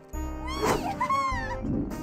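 A cartoon character's high-pitched vocal squeals, rising and falling several times, over light background music.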